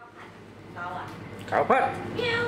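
Domestic cat meowing once, about one and a half seconds in: a short cry that rises and falls in pitch, as it is handled into a plastic carrier basket. Faint voices come before it.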